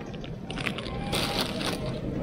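Plastic candy bag crinkling as it is handled and put back on a shelf, in two spells of crackling rustle, over a low steady background hum.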